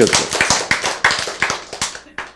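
A small audience clapping, many hands out of step with one another, thinning out near the end.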